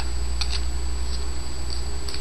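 A steady low hum on the recording, with a few faint clicks from trading cards being handled about half a second in.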